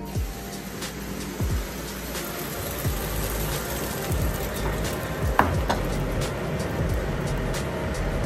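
Crepioca batter sizzling as it is poured into a hot frying pan, a steady hiss that builds over the first few seconds, with background music throughout.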